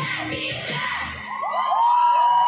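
A K-pop dance track ends about a second in, and the crowd of onlookers starts cheering and whooping with high, rising shouts.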